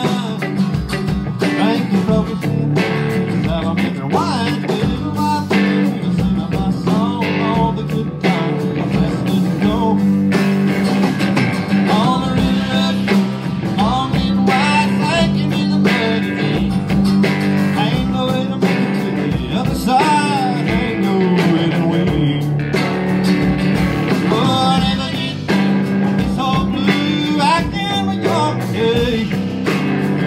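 Live blues-tinged rock-and-roll band playing: electric guitar lead over strummed acoustic guitar and a drum kit, loud and steady.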